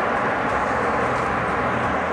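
Steady rush of wind and road noise while riding a 3000 W rear hub-motor Citycoco electric scooter at about 53 km/h, near its top speed, with a faint steady tone underneath.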